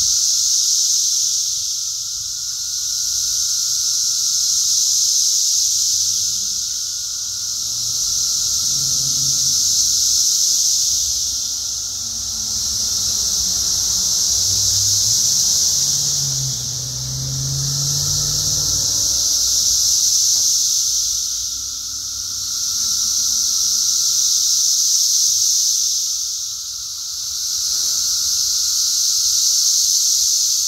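A chorus of periodical cicadas (Brood X) in the trees: a loud, shrill, continuous buzz that swells and fades in waves every few seconds, over a steady lower whine. A low droning sound rises and fades in the middle.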